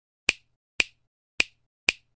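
Four crisp finger snaps, about half a second apart, laid in as sound effects in time with animated title text.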